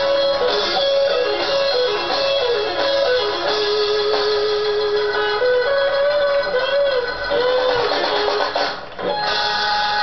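Electric blues lead guitar playing a slow single-note line with string bends and vibrato, including one long sustained note, over a backing band, heard as playback through computer speakers.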